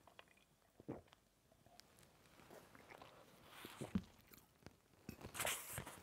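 A man drinking water from a glass: faint swallows and small mouth clicks, spread out and irregular.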